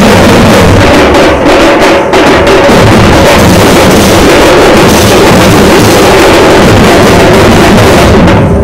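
A troupe of large double-headed barrel drums (dhol) beaten with sticks, all playing together in a dense, very loud rhythm.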